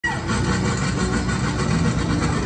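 Casey Jr. Circus Train's rear car rolling along its track, a steady rumble of wheels on rail.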